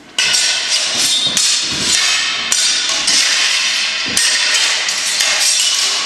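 Steel swords and bucklers clashing in a fencing exchange: a sudden run of loud metal strikes and scrapes, with ringing between the sharper hits.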